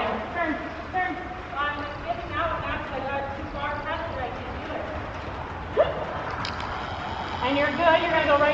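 Indistinct, fairly quiet speech over a steady low background rumble, with a short rising sound about six seconds in.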